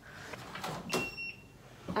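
Hotel room door being unlocked and opened: a short electronic beep from the key-card lock about a second in, among clicks and knocks of the latch and handle.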